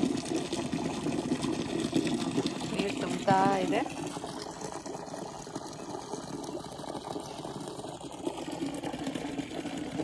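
Water running steadily into a bucket as clothes are put to soak. A short warbling pitched sound comes about three seconds in.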